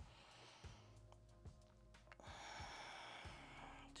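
Near silence with faint background music; a long soft breath, like an exhale, begins about halfway through.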